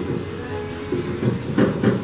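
Thick soba noodles being slurped, in a few short noisy bursts toward the end, over a steady low hum.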